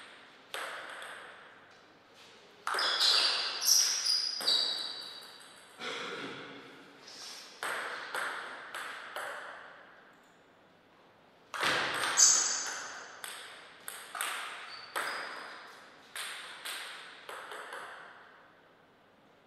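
Table tennis ball clicking back and forth off the table and rubber-faced bats in two rallies, each hit a sharp tick with a short high ping. A brief lull about ten seconds in separates the rallies.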